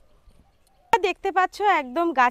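Near silence for about the first second, then a sharp click and a woman speaking.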